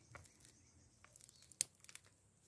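Faint crackling and tearing of a dry, matted root ball from a pot of củ lùn (Guinea arrowroot) as fingers pull the fibrous roots apart to free the tubers, with a sharper snap about one and a half seconds in.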